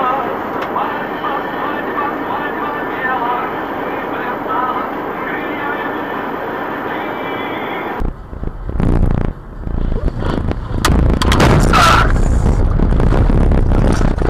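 Dashcam audio of road crashes. First, voices over traffic and street noise. After a sudden cut, loud rumbling road noise with sharp knocks and a louder crash about eleven seconds in, as a car is hit and spun across the road.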